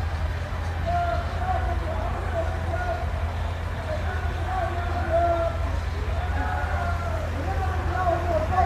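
Steady low rumble of idling truck diesel engines, with people talking in the background.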